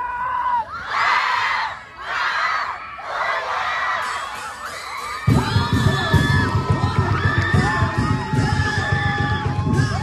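A group of people shouting and cheering in several bursts, then about halfway through, loud dance music with a heavy pounding drum beat starts and carries on.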